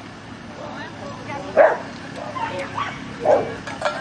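A dog barking twice, once about a second and a half in and again a little before the end, over faint background talk.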